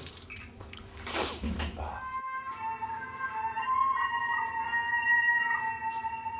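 Shower water splashing for about two seconds, then a cut to slow pan flute music with long held notes.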